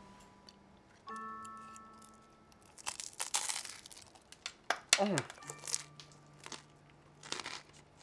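A crunchy bite into a forkful of bow-tie pasta, a dense crackling crunch about three seconds in, followed by scattered crisp clicks of chewing. Faint held musical tones sound before the bite.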